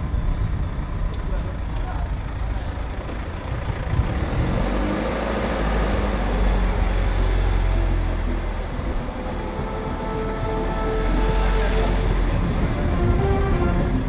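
Steady road noise of a moving vehicle, a deep low rumble under a broad hiss, heard from the car. Faint music creeps in during the second half.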